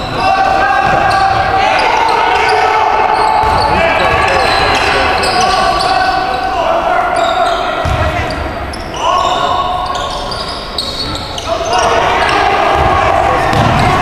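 Basketball game sounds in a gym: a basketball bouncing on the hardwood court among the voices of players and spectators, echoing in the hall.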